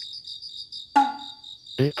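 Crickets chirping in a steady, evenly pulsed trill as night ambience. About a second in comes a single short knock-like sound that rings briefly.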